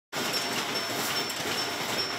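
Steady mechanical clatter of incense-making machinery running in the workshop, with a faint high whine that comes and goes.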